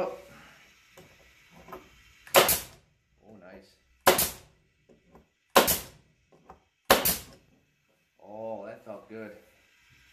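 Makita 18-gauge pneumatic brad nailer firing four brads into wood: four sharp shots about one and a half seconds apart.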